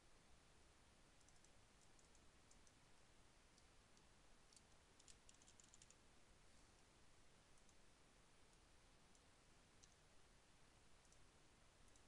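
Faint computer keyboard keystrokes and mouse clicks over near-silent room tone. The keys come in a quick cluster around the middle, with scattered single clicks later.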